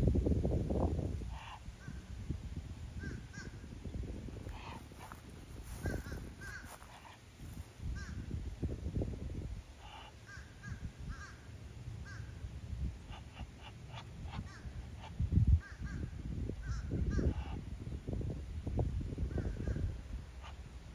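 Short, high bird calls, many in quick pairs, scattered throughout, over a low rumble on the microphone that is loudest at the start and again about fifteen seconds in.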